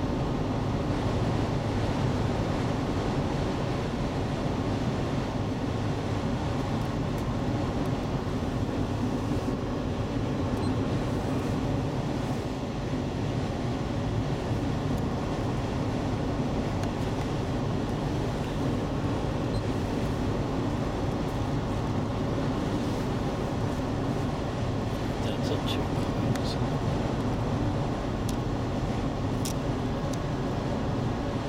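Steady road and engine noise heard inside the cabin of a 2003 Acura MDX cruising at highway speed: an even, low rumble of tyres and drivetrain. There are a few faint clicks near the end.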